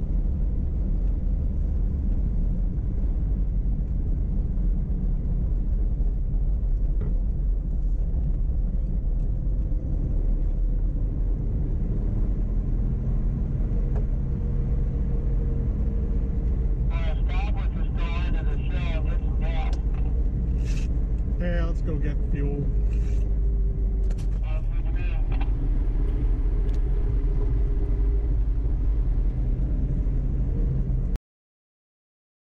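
Steady low rumble of a vehicle's engine and tyres driving slowly on a paved road. Indistinct voices come in for several seconds in the second half.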